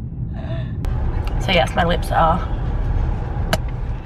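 Steady low rumble of a car's cabin while the car is driven, with a woman's short high-pitched laughs and gasps about one and a half to two seconds in.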